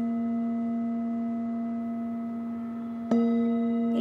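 Hand-held metal Tibetan singing bowl ringing with a steady low hum and several higher overtones, slowly fading. About three seconds in it is struck again with a padded mallet and the ring swells back up.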